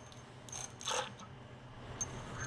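Steel coil fork spring sliding down inside a 39mm fork tube, with two short metallic scrapes, one about half a second in and a second near one second.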